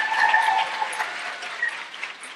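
Audience applauding, fading out steadily.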